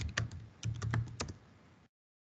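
Keys being typed on a computer keyboard: a quick run of about eight keystrokes that stops about a second and a half in.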